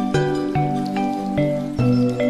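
Instrumental background music: a melody of plucked notes, a few a second, over held bass notes.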